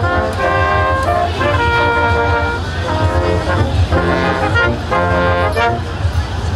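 A small brass ensemble of trumpets, trombone and tuba playing a piece together, in phrases of held and shorter notes. A steady low rumble runs underneath.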